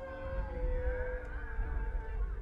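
A baby crying in wavering wails over a steady held note, with loud low rumbling underneath.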